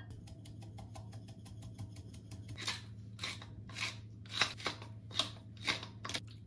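Spices being ground and shaken over raw chicken breasts in a glass bowl: a quick run of small, even clicks for a couple of seconds, then about seven short gritty bursts, roughly two a second.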